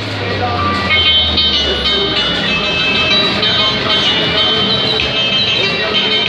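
Fairground din: loud music with high, jingle-like tones, under voices of a crowd. A low hum runs through the first couple of seconds.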